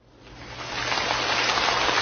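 Large seated audience applauding, the clapping fading in over about the first second and then holding steady.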